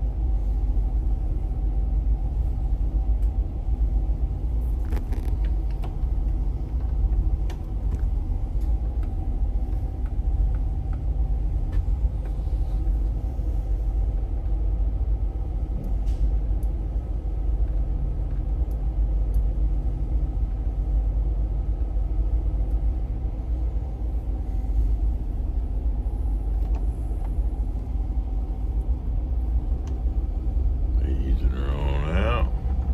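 Towboat diesel engines running steadily, heard inside the pilothouse as an even low drone with a faint hum above it and a few light clicks.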